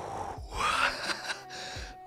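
A man's long, breathy sigh out through pursed lips, loudest about half a second in and fading by the second half, an appreciative reaction to the smell of the bud he has just sniffed.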